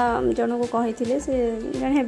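A high-pitched human voice in drawn-out, gliding tones, heard over background music.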